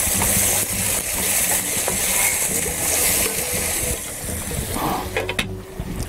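Peppers, tomatoes and herbs sizzling in a pan while being stirred with a wooden spoon; the sizzle thins out after about four seconds, over a steady low hum.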